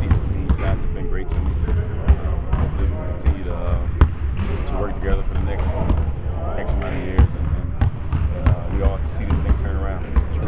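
Basketballs bouncing on a gym's hardwood court: a steady run of irregular dull thumps and sharper knocks, with background voices.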